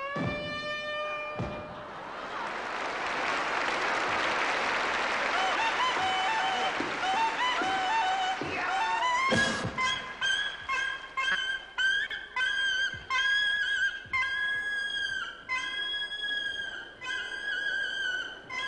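A clarinet plays a few falling notes, then a stretch of loud, even noise, then a high melody of short held, slightly wavering notes, played over and over.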